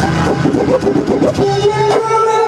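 Loud DJ set played from vinyl records on two turntables through a sound system: choppy, cut-up sound for about the first second and a half, then a held note comes in over a bass line.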